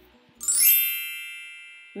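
Bright bell-like chime sound effect: a quick shimmering run of high notes about half a second in, then a cluster of ringing tones that fades away steadily.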